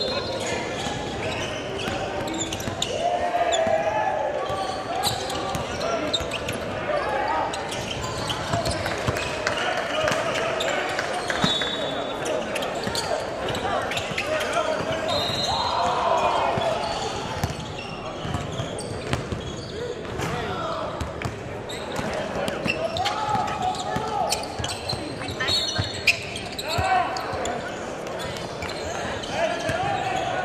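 Gym ambience: a basketball dribbled and bouncing on a hardwood court under indistinct crowd chatter, with echo from the large hall. A few short, high sneaker squeaks.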